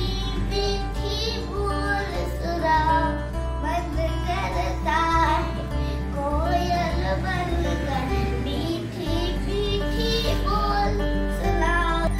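A young girl singing a Hindi children's poem over backing music with a steady bass line.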